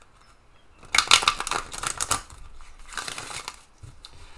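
Tarot cards being shuffled and handled: a run of rapid papery card flicks about a second in, lasting about a second, then a shorter run near the end.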